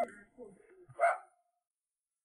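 A dog barks once, briefly, about a second in; the rest is near silence.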